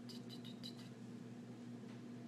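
Quiet room with a steady low hum, and a few faint, quick high-pitched chirps in the first second.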